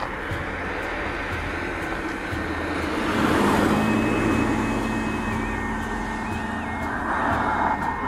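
Car driving along a road, heard from inside: a steady rumble of engine and tyre noise that swells a little louder a few seconds in, then settles.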